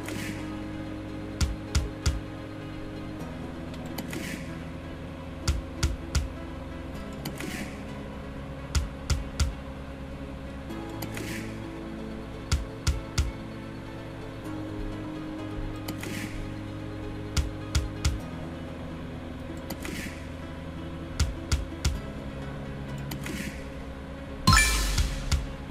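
Synot Fruity Gold online slot game: a steady electronic background music loop, broken every two to four seconds by a short cluster of two or three sharp clicks as the reels spin and stop. No win jingle sounds, as the spins are losing ones.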